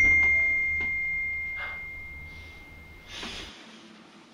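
A single high, bell-like ding that rings on as one clear tone and fades away over about three seconds, with a low hum beneath it that cuts off near the end.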